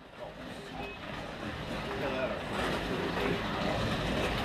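Midget slot cars running around a model dirt oval. Their small electric motors whir and their pickups and tyres rattle in the track slots, the sound growing louder as the cars come toward the front straight.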